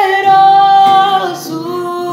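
A young man's high singing voice holds one long note, then drops to a lower note near the end, over an acoustic guitar accompaniment.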